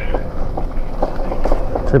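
E-bike riding over a bumpy, leaf-covered dirt trail: steady tyre and wind noise with irregular knocks and rattles from the bike over the bumps.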